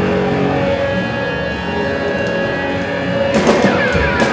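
Live hardcore band played loud through a club PA: distorted electric guitar holding ringing chords, with the drums mostly dropped out, then drum and cymbal hits crashing back in a little after three seconds in.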